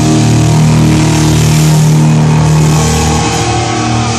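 Horror punk band playing live and loud, electric guitar and bass holding long low notes that change about three seconds in.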